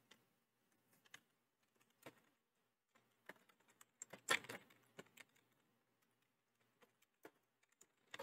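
Faint, scattered keystrokes on a computer keyboard, with a louder run of clicks about four seconds in.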